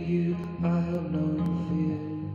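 Slow chords on a hollow-body archtop electric guitar, the notes left to ring and changing about every half second.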